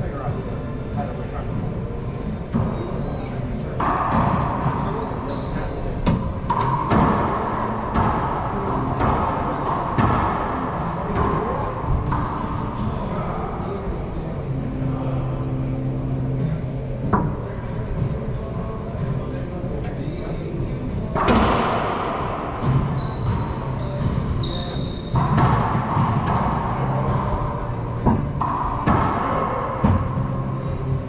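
Racquetball play: the hollow rubber ball smacked by racquets and cracking off the walls and floor of an enclosed court, each hit ringing with echo. The hits come scattered at first and then in quick clusters during rallies in the second half.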